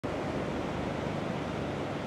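Steady wash of ocean surf breaking on a sandy beach.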